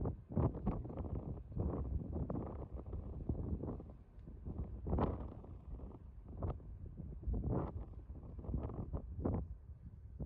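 Wind buffeting the microphone in irregular gusts, a low rumble that surges and drops every second or so.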